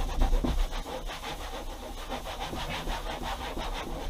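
A paper towel dampened with denatured alcohol rubbed hard over a textured RV wall panel, in rapid, even back-and-forth strokes, several a second, to clean the surface for adhesive tape.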